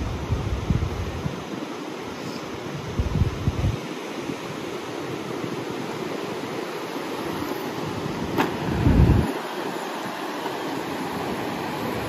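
Steady wash of ocean surf with wind buffeting the microphone in gusts, the strongest about nine seconds in.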